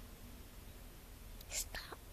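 A person's short whisper close to the microphone about one and a half seconds in, over a faint low hum.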